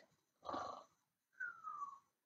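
A woman making a pretend snore: a short raspy breath about half a second in, then a thin whistle falling in pitch on the out-breath.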